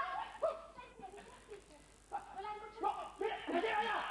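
Performers' voices on stage, spoken or half-sung theatrically, with music faintly underneath; the voices drop away for about a second partway through, then resume.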